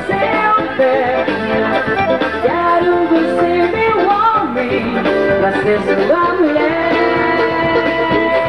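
Live band music at full volume: a gliding melody line over a steady accompaniment, with no break.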